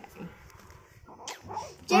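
A guinea pig squeaking a few times in short high calls in the second half, with a person's voice at the very end.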